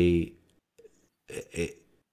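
Speech only: a drawn-out word trailing off, a pause of about a second, then a short word.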